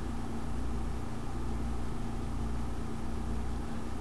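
Steady low electrical hum with an even hiss: the background noise of an open voice microphone at a computer. No synth notes or clicks are heard.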